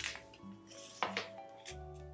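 Gentle background music, with paper rustling as a picture-book page is turned: a short swish at the start and a longer one about a second in.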